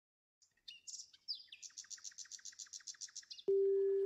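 Bird chirping, then a rapid trill of repeated high notes, about eight a second. Near the end a steady held musical note starts suddenly.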